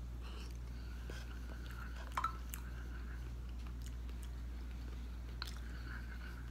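A man chewing a mouthful of meatloaf with his mouth close to the microphone, quiet and soft, with a couple of faint ticks, over a steady low electrical hum.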